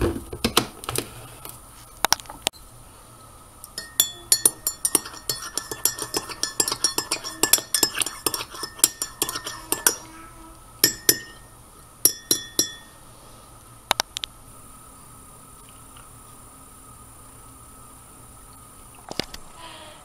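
Metal spoon stirring coffee in a ceramic mug, clinking rapidly against the sides for about six seconds, with a few single clinks before and after.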